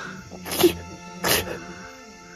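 A man groaning in pain, two short breathy groans, over steady background music.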